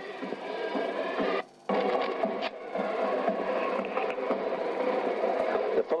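A carnival marching band playing steady, sustained notes on an old, bandwidth-limited recording. The sound drops out abruptly for a moment about a second and a half in.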